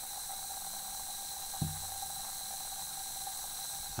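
Magnesium metal fizzing in hydrochloric acid: a faint, steady bubbling as hydrogen gas is given off and the metal dissolves. There is one soft tap about one and a half seconds in.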